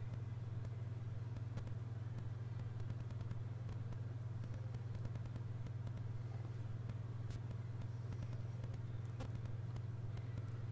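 A steady, unchanging low hum with nothing else standing out.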